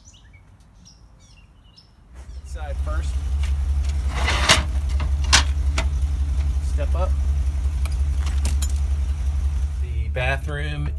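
A steady low rumble sets in about two seconds in. Two sharp metal clacks come about halfway through as the motorhome's fold-down metal entry step is pulled out.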